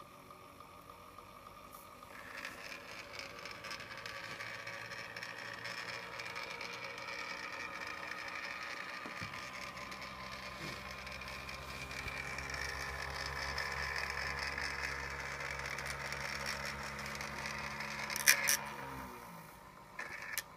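Brunswick four-spring phonograph spring motor running on the bench: a steady whir of its governor and gearing that grows louder over the first few seconds, with a lower hum joining about halfway. A sharp click comes near the end, and the running sound then dies away.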